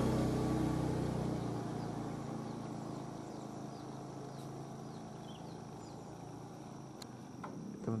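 A motor vehicle's engine hum fading away over several seconds, with a steady high-pitched insect drone and a few faint chirps behind it.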